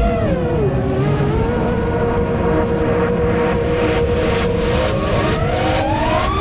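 Brushless motors and propellers of a 5-inch FPV freestyle quadcopter whining at a steady pitch, then climbing in pitch near the end as the throttle comes up for takeoff.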